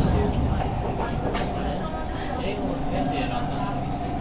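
Inside a passenger train car on an elevated line: steady running rumble of the train on the track, with a steady motor hum coming in about halfway through.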